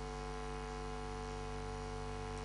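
Steady electrical mains hum with a buzz of many even overtones, unchanging throughout.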